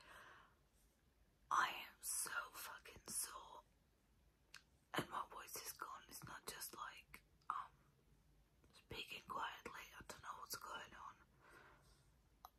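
A woman whispering close to the microphone, in three stretches with short pauses between.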